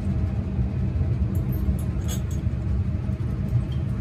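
Steady low rumble of laboratory ventilation, with a few faint clinks of glassware about one and a half to two seconds in as a dropper works in a test tube.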